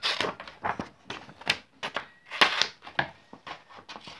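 Scissors cutting paper: a string of irregular, sharp snips as the corners of a sheet are trimmed off.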